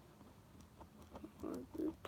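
A pen writing on a Pokémon trading card, heard as faint light ticks and scratches, followed near the end by a short grunt-like vocal sound.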